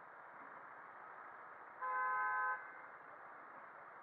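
A vehicle horn sounding once, a single steady beep of under a second about two seconds in, over steady road noise.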